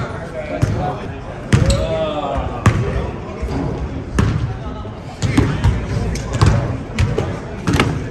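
Basketballs bouncing on a gym floor: irregular sharp thuds, roughly one a second, under background voices.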